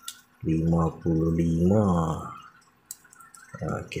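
Mostly a man's voice; in a pause about three seconds in, one light metallic click as the feeler gauge is handled against the cylinder liner.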